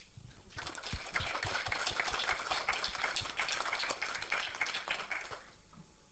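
Audience applauding: a spatter of many hand claps that starts about half a second in, holds for some four seconds and dies away near the end.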